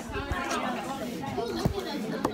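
Several voices talking over one another in chatter, with a sharp knock from the phone being handled about a second and a half in.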